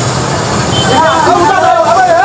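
Heavy diesel vehicle engine running steadily with a low rumble, with a man's voice calling out over it from about half a second in.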